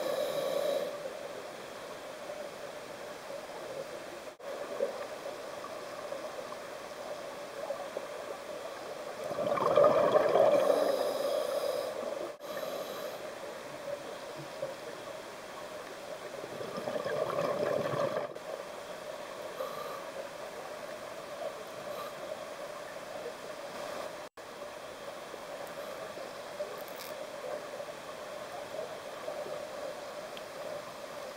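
Underwater sound picked up by a diver's camera in its housing: a steady muffled rushing noise that swells twice, about ten seconds in and again around seventeen seconds, as scuba exhaust bubbles stream past. The sound drops out for an instant at a few points.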